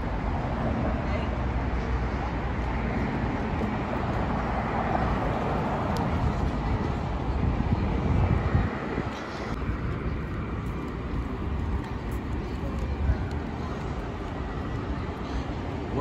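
Busy city street ambience: steady traffic noise with a low rumble, briefly dropping away about nine seconds in.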